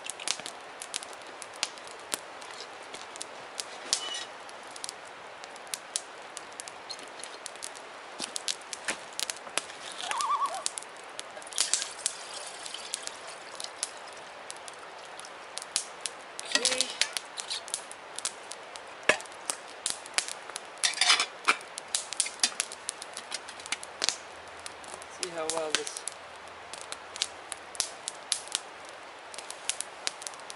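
Wood campfire crackling, with sharp, irregular pops and snaps. A few clinks come from a metal water bottle and a pot being handled beside it.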